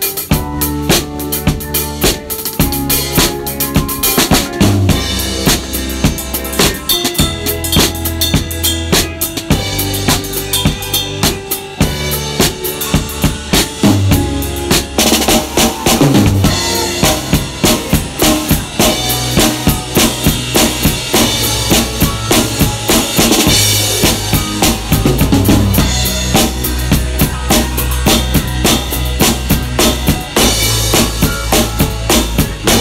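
Drum kit played in a funk groove, snare and bass drum strokes with rimshots up front, over the bass line of a band playing along.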